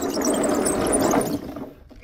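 Homebuilt wooden tank driven hard from a standstill by its two NPC Black Max electric motors: a loud, dense noise of motors and tracks for about a second and a half, then falling away. It is a wheelie attempt that falls short, without enough power to lift the front.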